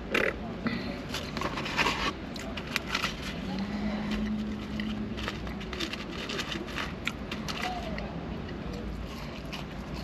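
Paper fry tray crinkling and crackling as crisp French fries are picked out of it and eaten, in irregular short rustles and crackles. A low rumble runs underneath, and a short steady hum comes a little before the middle.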